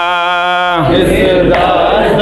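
Men chanting a noha, an Urdu lament, with no instruments. One man's voice holds a single long note through the first second, then the chant carries on with several voices overlapping.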